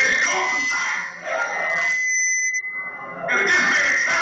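A man's voice over a microphone and PA, with a steady high whistle running under it that cuts off about three seconds in. The whistle is typical of microphone feedback.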